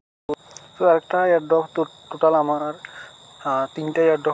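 A man's voice speaking in short phrases over a steady high-pitched whine, with a brief total cut-out of sound right at the start.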